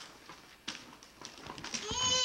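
Wrapping paper crackling in a few short, separate rustles as a toddler pulls at a wrapped present. A child's high voice starts up at the very end.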